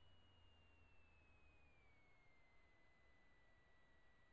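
Near silence: the sound track drops out almost completely.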